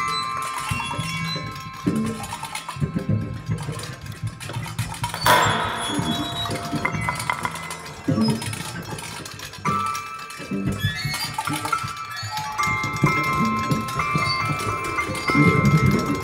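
Free-improvised ensemble music: metal percussion, enamel bowls and a chime-rod box, ringing in long overlapping tones over a low sustained line. A few sharp strikes come about five, eight and ten seconds in.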